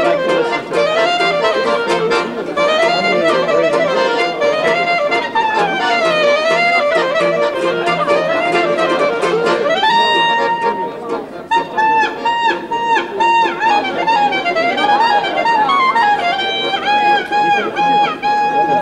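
Clarinet and accordion playing a klezmer-style tune together, the clarinet leading with bending, sliding phrases over the accordion's chords. About ten seconds in, the clarinet holds a long high note, then plays a run of short repeated notes and a quick trill. It ends on another long held note.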